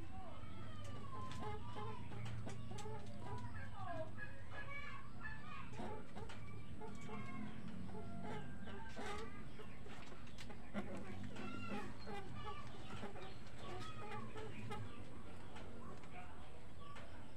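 Birds calling, with fowl-like clucking and many short gliding chirps, over a steady low hum.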